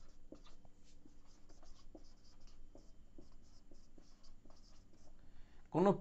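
Marker pen writing on a whiteboard: quiet scratching and squeaking in short, irregular strokes as a line of words is written.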